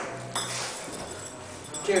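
A young man laughing uncontrollably and breathlessly, with a sharp tap about a third of a second in.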